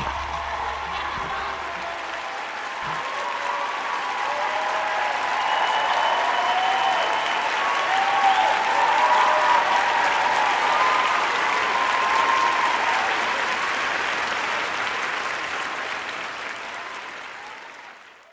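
Audience applauding, growing louder through the middle and then fading away near the end.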